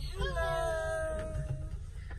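A young child's high-pitched, drawn-out vocal call, one long held note, over the steady low rumble inside a car.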